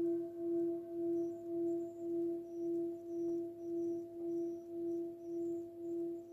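Singing bowl ringing after a mallet strike, holding one steady low tone that swells and dips in loudness about twice a second and slowly fades.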